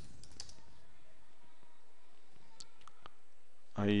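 A few scattered keystrokes on a computer keyboard, faint over a steady hiss.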